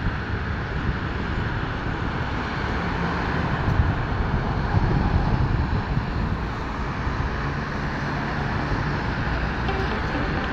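Steady roar of multi-lane highway traffic passing below: tyre noise mixed with the low hum of car, minibus and bus engines, swelling a little for a few seconds midway.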